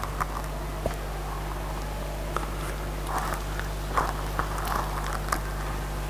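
Steady low electrical hum from the public-address system, with faint scattered rustles, small clicks and soft murmurs from the seated audience.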